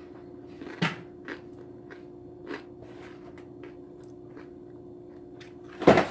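Close-up eating sounds: chewing with scattered lip smacks and mouth clicks over a steady low hum. One louder knock comes near the end.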